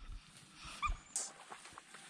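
A Shar-Pei gives one short, high whine about a second in, over low water sloshing and bumping, with a sudden burst of noise just after it.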